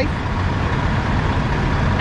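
Steady low rumble of nearby idling diesel semi-trucks, with a faint steady hum on top.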